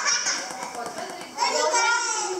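Children's high voices shouting and calling out over one another during a game, dipping briefly and growing loud again about one and a half seconds in.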